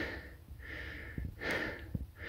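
A man breathing hard close to the microphone, a breath in or out about every three-quarters of a second.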